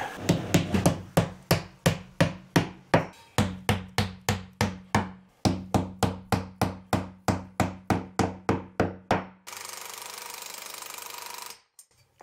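Steady hammering with about three blows a second, with a short pause midway: a hammer is driving nylon wall plugs in at the foot of a steel shelf upright. Near the end the blows stop and a faint steady hiss follows for about two seconds.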